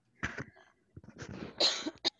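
A woman coughing: one short cough, then a longer, louder cough about a second in.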